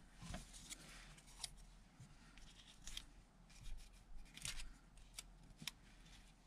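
Faint rustling of paper collage pieces being handled and pressed onto a card, with a few light clicks and taps in short bursts.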